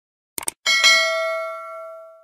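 A quick double mouse-click sound effect, then a bright notification-bell ding, struck twice in quick succession, that rings and fades away over about a second and a half.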